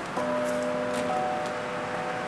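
A carillon bell tapped by hand, then ringing on with several of its tones sounding together; the lowest tone fades after about a second while the higher ones hold.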